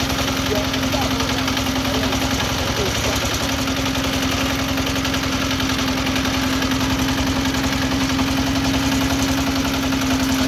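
Micromec mini rice combine harvester running steadily while threshing, its engine pulsing evenly under a constant drone.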